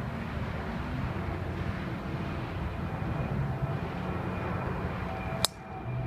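A golf club striking the ball off the tee: one sharp crack near the end, over a steady distant engine hum.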